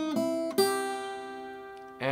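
Acoustic guitar fingerpicked: single melody notes on the top two strings, the last one, about half a second in, ringing out and slowly fading.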